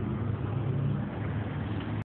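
A steady low engine drone with a few constant low tones, unchanging throughout.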